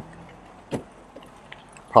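A single short click about three-quarters of a second in, followed by a few faint ticks: the BMW 7 Series' hands-free tailgate unlatching after a foot kick under the rear bumper.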